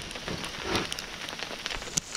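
Sleet pellets pattering down, a steady hiss made of many small ticks.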